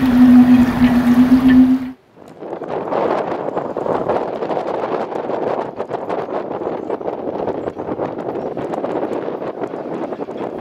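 Gusty wind on the microphone. A steady low hum over rushing noise cuts off abruptly about two seconds in and gives way to a rushing noise full of irregular crackles.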